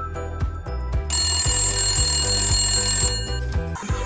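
Background music with a steady beat. About a second in, a countdown timer's alarm rings for about two seconds, signalling that time is up.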